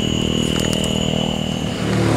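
A steady low engine hum with a thin, steady high whine over it that fades near the end, and a few faint clicks.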